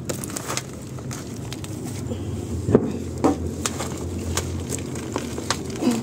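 Dry leaves, twigs and potting mix crackling and rustling as a hand works in a plant pot, loosening the plant's roots from the soil. There are scattered snaps, with one sharper click about three seconds in.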